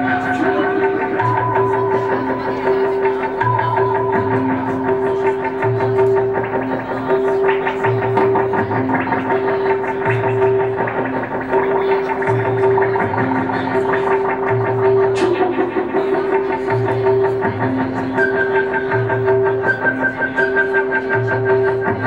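Live band music: a low bass figure pulsing about once a second under held tones that alternate between two pitches, with a higher melodic line on top.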